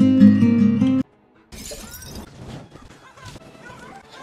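Horror film soundtrack: a loud, dissonant music sting that cuts off suddenly about a second in, then after a brief silence a quieter stretch of noisy movie sound effects.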